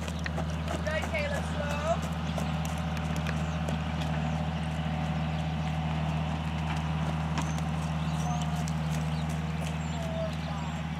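Horses' hooves beating on a soft dirt arena as they trot and canter, over a steady low hum. A voice is heard briefly in the first two seconds.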